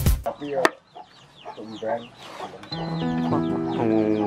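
Beat music cuts off at the start. A chicken clucks a few times amid quick, falling high chirps. Slow, sustained music notes come in at about three seconds.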